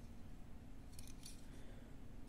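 Faint handling clicks of fingers turning a small die-cast metal toy car over in the hand, a few light ticks around the middle, over a low room hum.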